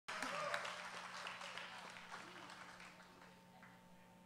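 Small audience applauding, loudest at the start and dying away over a few seconds, over a steady low hum.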